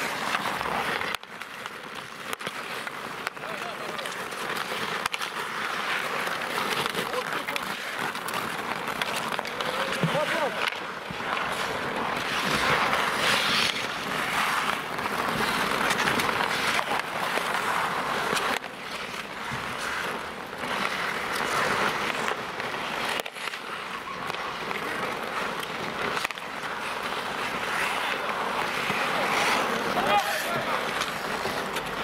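Ice hockey skate blades scraping and carving across an outdoor rink, with hockey sticks knocking the puck now and then and players' shouts.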